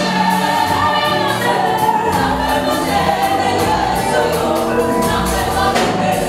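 Live gospel music: a female lead singer with backing vocalists, over a band of drums, electric guitar, bass and keyboard.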